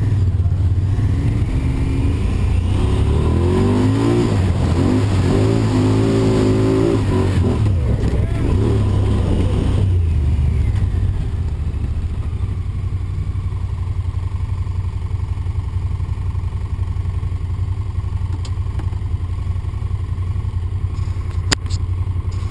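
An off-road vehicle's engine revving, its pitch rising and falling over the first ten seconds as it pulls away, then running more steadily and a little quieter. A few sharp clicks come near the end.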